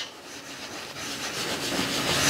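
Dish towel rubbing over a paper art-journal page, working cold wax medium into it: a rubbing hiss that grows louder toward the end.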